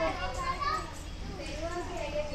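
Children's voices, talking and playing.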